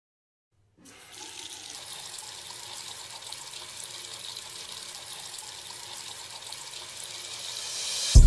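Water running steadily from a single-lever mixer tap into a sink basin, a steady hiss that starts just under a second in.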